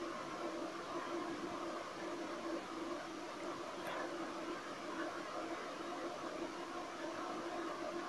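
A steady low mechanical hum with an even faint hiss, as of an electric fan running in the room.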